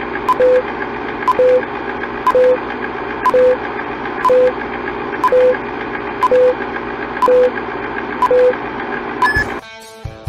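Old-film countdown leader sound effect: a steady projector-style hiss with a click and a short low beep once a second, nine times. Near the end comes a single higher beep, then the hiss cuts off.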